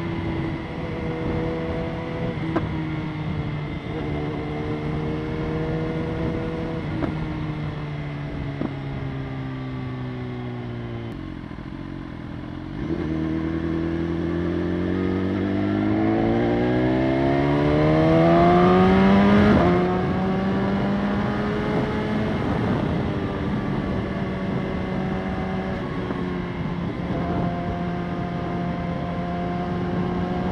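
BMW S1000RR's inline-four engine under way. It cruises steadily, the revs sink as it eases off, then about halfway through it pulls hard with the revs rising for several seconds. The pitch drops back sharply and it settles into steady cruising.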